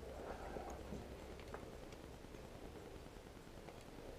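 Quiet room tone with a steady low rumble, a faint rustle in the first second and a few faint clicks.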